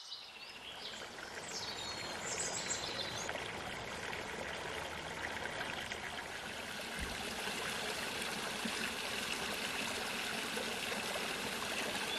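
Small mountain stream flowing and splashing over rocks, a steady rush of water.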